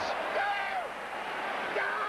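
A man's excited exclamation with falling pitch, over a steady background of stadium crowd noise.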